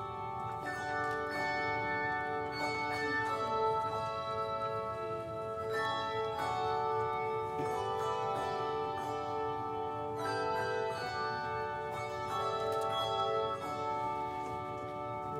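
Handbell choir playing a slow hymn-like piece: chords of bells struck every second or two and left ringing, overlapping as the harmony changes.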